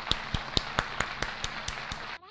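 Hands clapping in a steady rhythm, about four or five claps a second, over a steady hiss.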